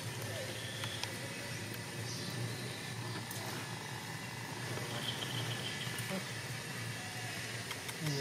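Steady low hum of outdoor background noise with faint, indistinct voices.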